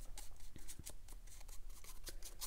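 Round paintbrush flicking paint onto cold-press cotton watercolor paper in a quick run of short, scratchy strokes, several a second.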